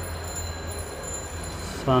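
Steady low hum and background room noise with a few faint high-pitched whines, then a man starts speaking near the end.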